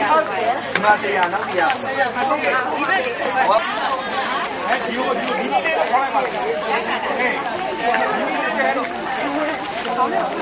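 Several people talking at once, their voices overlapping in steady group chatter.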